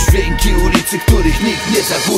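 Hip-hop music: a beat with heavy kick drums and rapped vocals over it.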